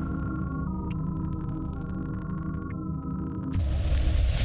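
Synthesized drone from an advertisement's soundtrack: a held hum with upper tones that step in pitch a few times. About three and a half seconds in, a loud rushing whoosh sound effect cuts in.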